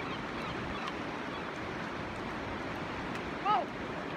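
Steady rush of fast river water tumbling through rapids.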